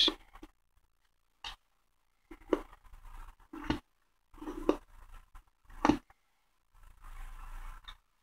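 A folded one-dollar bill being creased hard with the fingers: stretches of faint scraping and crinkling, broken by about five short sharp crackles roughly a second apart.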